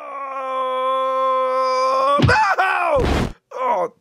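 A man's voice holds one long, steady cry for about two seconds. The cry then bends down and falls away. About three seconds in comes a short burst of noise, a puff or thud.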